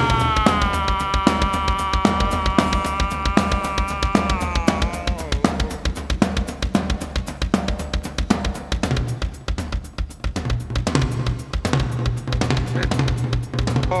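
A live drum kit playing a steady beat on kick, snare and cymbals. In the first few seconds a long held pitched note sounds over the drums, wavers, slides down and stops about five seconds in, leaving the drums alone.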